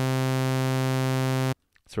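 Bitwig Polysynth's first oscillator, a sawtooth on the init patch with pitch set to zero, holding a single C3 note: a steady, bright synth tone. It cuts off suddenly about one and a half seconds in.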